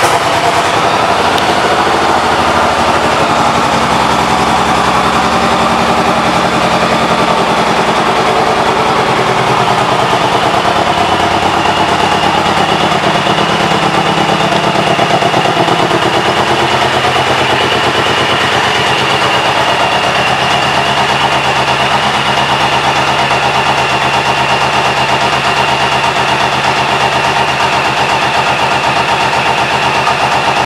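Suzuki Boulevard C109R's 1783 cc V-twin idling steadily, having just been started.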